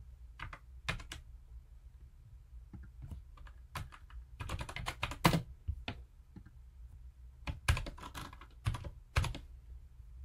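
Computer keyboard typing in irregular bursts of key clicks, busiest about halfway through and again near the end.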